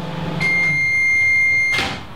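A steady, high electronic beep held for about a second and a half over a low hum, cut off by a short sharp noise near the end.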